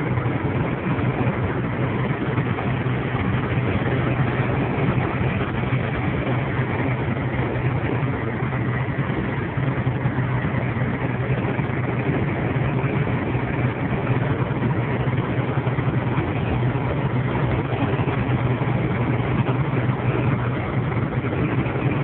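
Steady drone of a truck's engine and its tyres on a wet highway, heard inside the cab while cruising at an even speed, with a constant low hum underneath.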